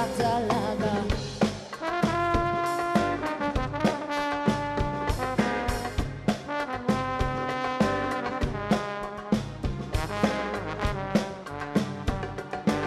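Live funk band: a horn section of tenor saxophone, trumpet and trombone plays a riff of held notes over drum kit and electric bass. A sung line ends about a second in, and the horns take over from about two seconds in.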